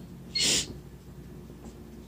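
A short breathy hiss from the speaker's breath at the microphone about half a second in, followed by faint steady room noise.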